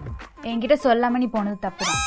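A single short cat meow that rises and falls in pitch, near the end, over talking.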